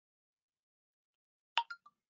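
Three quick, short pitched pops about a second and a half in, each quieter than the last.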